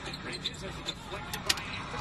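Basketball game broadcast audio playing back at low volume: arena crowd noise with a faint commentator's voice and a couple of short, sharp sounds near the end.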